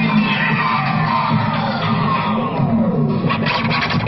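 Electronic free-party tekno played loud through an outdoor rave sound system: a steady deep bass under a distorted synth with a long falling sweep, after which the beat comes back hard near the end.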